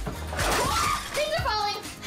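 Background music with excited voices and a short crash-like burst of noise about half a second in.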